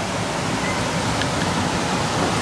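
Heavy rain pouring down: a steady, even hiss.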